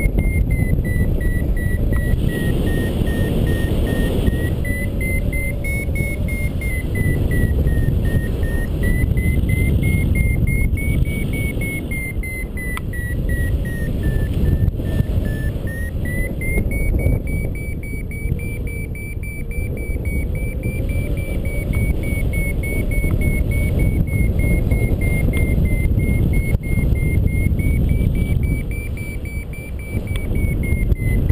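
A paragliding variometer beeping steadily while the glider climbs, its pitch drifting up and down over a few seconds as the lift strengthens and weakens. Heavy wind rumble on the camera microphone runs underneath.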